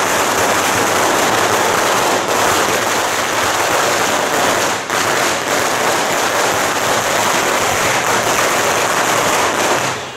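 A long string of firecrackers going off in a continuous, dense crackle, with a brief dip just before halfway.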